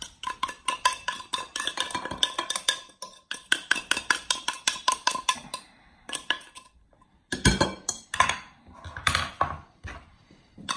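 Opened tin tuna cans clinking and scraping as the tuna is knocked and scraped out of them into a glass bowl: quick runs of metallic taps with a ringing tone from the can. A louder clatter comes about seven seconds in.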